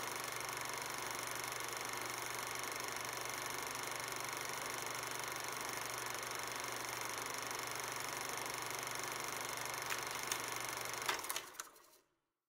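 Old film-reel noise: a steady hiss with a low hum and faint mechanical whir, as of a projector running. A few sharp clicks come near the end, then the sound quickly dies away.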